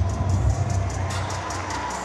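Music playing over a stadium sound system with a crowd cheering, celebrating a try just scored.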